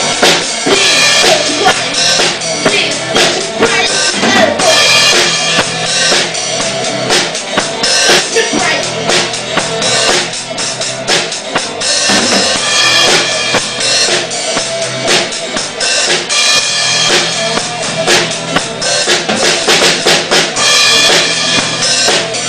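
Progressive rock band playing, with a busy drum kit of kick drum, snare and cymbals loud in the mix and hit densely.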